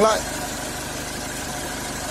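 Mitsubishi Triton's Di-D diesel engine idling steadily and evenly, with no knocking or rattling. The seller takes this for a sound engine with good compression.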